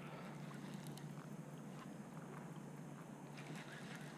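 Fishing reel being wound in against a hooked fish, faint, with scattered light clicks over a steady low hum.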